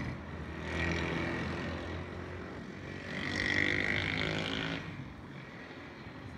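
Beer being poured from a bottle into a goblet, gurgling and fizzing as the head builds, swelling about a second in and again midway. A low rumble like passing road traffic runs underneath.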